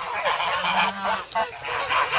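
A flock of domestic geese honking at close range, many short calls overlapping one after another.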